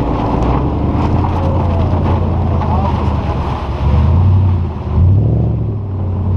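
Audi S4 engine running under load as the car drives on lake ice, its note stepping up in pitch about four seconds in and again about a second later, with wind buffeting the exterior-mounted microphone.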